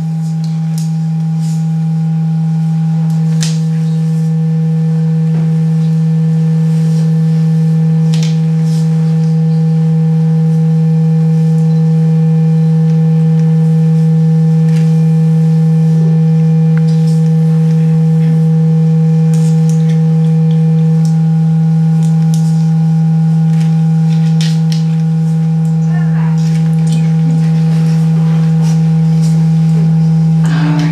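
A loud, steady electronic drone of pure low tones: a strong low hum with two fainter, higher held tones above it, slowly swelling in loudness, with a few faint clicks.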